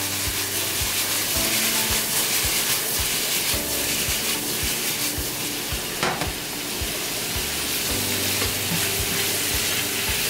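Sweet pork tocino sizzling in a hot nonstick wok as the pan is tossed and the pieces stirred, the heat just switched off. A brief louder scrape about six seconds in. Soft background music with a steady beat runs underneath.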